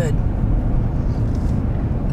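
Steady road and engine noise of a car driving along, heard from inside the cabin: a continuous low rumble with a fainter hiss above it.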